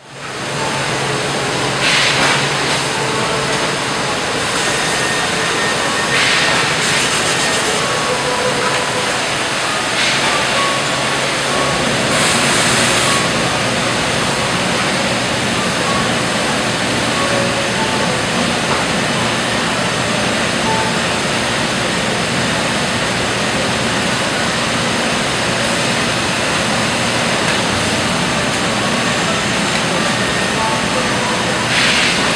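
Steady, loud roar of dry-cleaning plant machinery, with four short, louder hisses in the first half.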